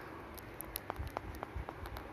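A quick run of light clicks and taps from handling the recording device, over a steady background hiss.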